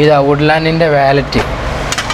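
A man's voice speaking for about the first second, then two short noises near the end.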